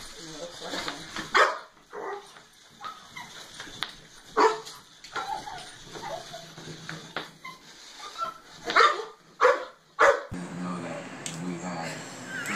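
A small dog barking in short, sharp single barks, spaced a few seconds apart, with two close together near the end.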